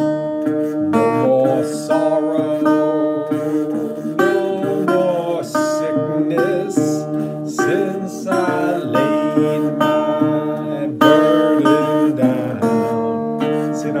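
Steel-bodied resonator guitar in open D tuning played fingerstyle. A repeated thumbed D bass runs under a melody picked on the higher strings, and some notes glide in pitch.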